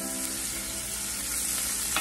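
Sliced steak sizzling steadily in a hot cast-iron skillet, searing in avocado oil.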